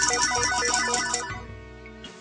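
Slot-machine jackpot sound effect: a rapid electronic bell ringing with chiming tones, which stops about a second and a half in and fades out.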